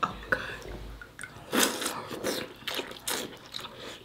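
Close-up wet slurping and sucking of sauce-coated crab legs being eaten, a handful of short smacking bursts starting about a second and a half in.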